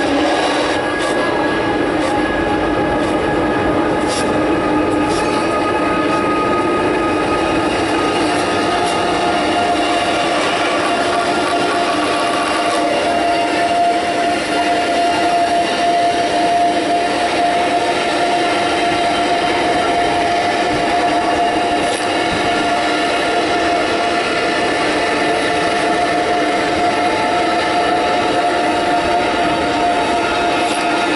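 Electronic dance score of sustained drones over a dense grinding, rumbling noise, played loud. Several held tones overlap; one drops out about halfway through while a higher held tone grows stronger.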